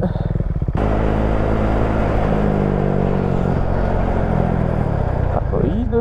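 Husqvarna 401's single-cylinder engine running at a steady road speed, under wind and road noise. A voice comes in near the end.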